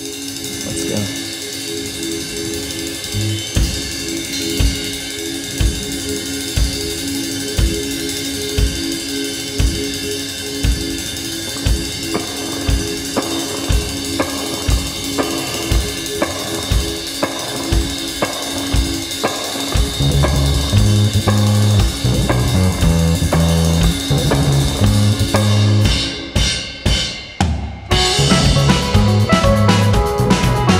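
A live indie band begins a song: a repeating keyboard figure over a steady kick drum and cymbals, with electric guitars. A loud low bass part comes in about twenty seconds in, and the band cuts in and out in a few sharp stops near the end.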